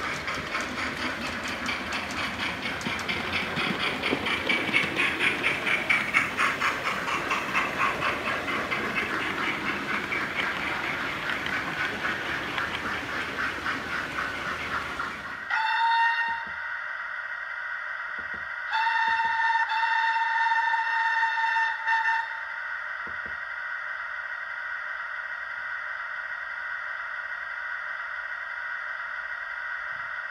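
Model steam locomotive sound: a running train with a fast rhythmic beat that swells and then fades over the first fifteen seconds. Then, with the locomotive standing, a steady hiss and two whistle blasts, a short one followed by a longer one of about three and a half seconds.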